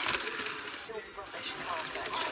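Background speech from a television programme, with a short clatter right at the start as a hand handles an OO gauge model railway coach on the track.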